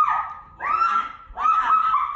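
A person's repeated high-pitched shrieking cries, about three in two seconds, each rising, holding and then falling away.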